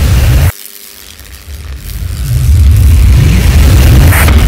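Logo-animation sound effects: a deep rumbling boom that cuts off abruptly about half a second in, then swells back up into a steady heavy low rumble, with a sharp crackling burst right at the end.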